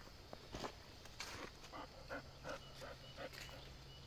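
A quick series of about seven short animal calls, faint, coming a few tenths of a second apart before stopping a little past three seconds in, over a faint steady hum.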